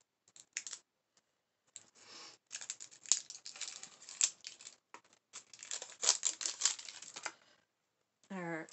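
Small product packaging being opened by hand: crackling, tearing and crinkling in several spells, with a couple of short ones at first and two longer ones in the second half.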